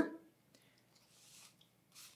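Near silence: room tone in a pause between spoken sentences, with the tail of a man's word at the very start and a faint soft hiss around the middle.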